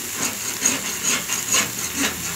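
A slotted metal spatula scraping and tapping across a steel flat-top griddle in short repeated strokes, over the steady sizzle of thin beef steaks frying on the plate.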